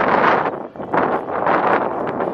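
Wind buffeting the microphone outdoors, a loud rushing noise that dips briefly under a second in and then picks up again.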